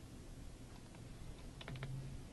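Faint computer keyboard keystrokes: a single tap and then a quick run of three or four taps near the end.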